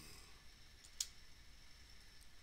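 Near silence with a single faint, short click about a second in.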